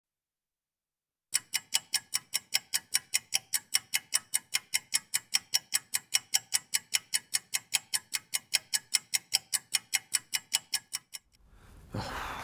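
Clock ticking fast and evenly, about five ticks a second, starting after a second or so of silence and stopping shortly before the end.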